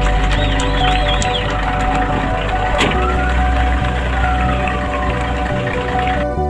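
Background music over the live sound of a moving fire-truck convoy: a steady rush of engine and road noise with low rumble. In the middle, a faint tone rises and then falls, and there is one sharp click.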